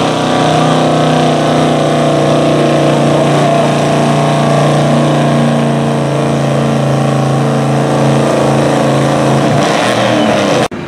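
GMC pickup truck's engine running flat out under heavy load as it drags a truck-pull sled, holding a steady high drone. The revs fall away near the end.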